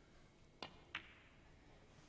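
Snooker shot: the cue tip strikes the cue ball with a click, and about a third of a second later the cue ball hits the black with a sharper, louder click of resin ball on resin ball.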